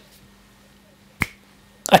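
A single sharp finger snap in a pause of speech, over a faint steady low hum.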